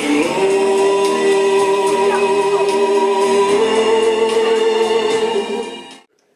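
Recorded song played over a sound system for a lip-sync act: a vocal line holding long, steady notes over the backing, stepping up to a higher held note about halfway through. The music fades and stops just before the end.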